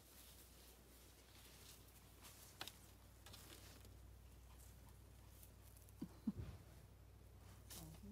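Near silence: a faint steady low rumble with a few soft clicks.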